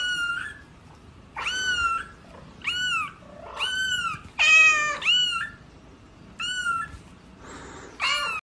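A tiny orange kitten mewing over and over: short, high-pitched cries that rise and fall, about one a second, one of them a little after four seconds louder and lower than the rest.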